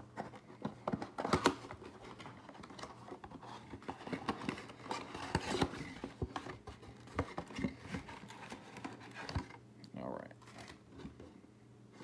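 Cardboard trading-card box being opened by hand: irregular rustling, tearing and crinkling of cardboard and packaging, with scattered sharp clicks and snaps.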